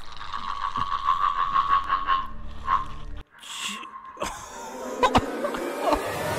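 A strange croaking sound from the film's soundtrack: a steady pulsing tone that repeats rapidly, then cuts off suddenly about three seconds in, followed by a jumble of noisier sounds and a couple of sharp clicks.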